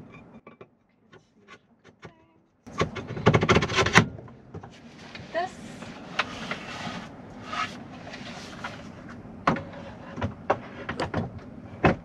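A wooden table top and its aluminium pedestal table mount being handled and fitted together. First a few light clicks, then a burst of rattling and knocking about three seconds in, then scattered knocks over a steady hiss.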